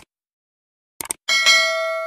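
Subscribe-button sound effect: a short mouse click, a quick double click about a second in, then a notification bell dings and rings on, fading slowly.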